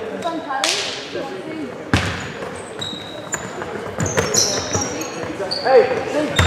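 Basketball being played on a wooden sports-hall court: a sharp thud about two seconds in, echoing in the hall, short high squeaks of sneakers on the floor in the second half, and players' voices calling out.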